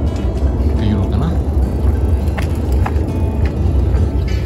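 Wind buffeting a phone's microphone: a steady low rumble, with a couple of short clicks near the end.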